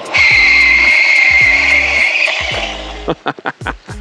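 Steady high squeal from the rear wheel under hard braking, lasting about two and a half seconds before fading: the 180 mm rear disc brake locking the tyre into a skid on pavement, leaving a skid mark.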